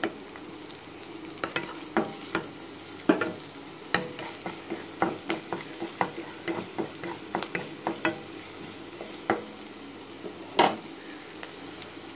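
Chopped onions, curry leaves and green chilli frying in oil in a kadai, a steady sizzle broken by frequent sharp clicks and scrapes of a utensil stirring against the pan, with one louder knock near the end.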